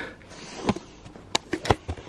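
A man breathing hard and sniffing after a strenuous climb, broken by several sharp clicks and knocks in the second half.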